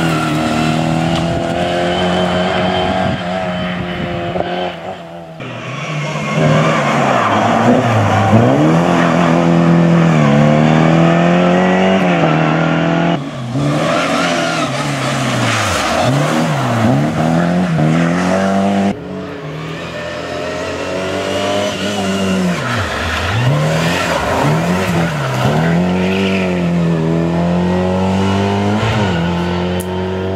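Škoda Favorit rally car's four-cylinder engine revving hard as it drives past, its note climbing and dropping repeatedly through gear changes and corners. Several separate passes are cut together, with sudden breaks about 5, 13 and 19 seconds in.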